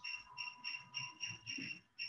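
Faint, even chirping of a cricket, about four to five short, high chirps a second.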